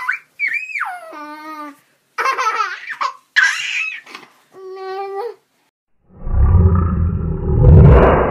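A high-pitched young voice makes a run of short babbling, squealing calls that rise and fall in pitch. About six seconds in, a loud low rumble cuts in and swells.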